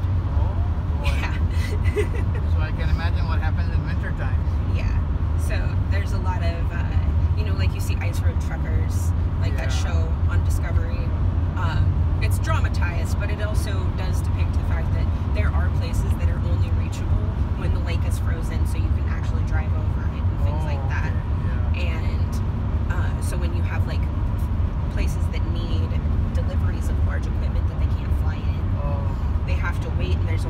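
Steady low rumble of engine and tyre noise heard from inside a vehicle cabin at highway speed, with quiet talking over it.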